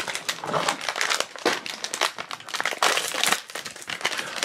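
A foil wrapper bag crinkling and crackling in irregular bursts as it is handled and pulled open by hand.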